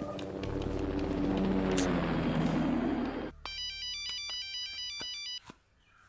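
A rising rush of noise over a deep rumble gives way to about two seconds of garbled, rapidly switching electronic tones, then cuts off suddenly: a satellite phone call breaking up and dropping.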